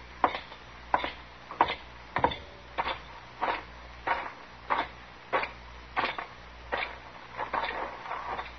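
Footsteps walking at an even, unhurried pace, about three steps every two seconds: a radio-drama sound effect of a man crossing to confront someone.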